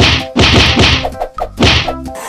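Several loud whacks in quick succession, then one more near the end, over background keyboard music.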